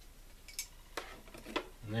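A few light metallic clicks, spaced about half a second apart, as metal bus bars and terminal hardware are set onto LiFePO4 cell terminals to wire the cells in series.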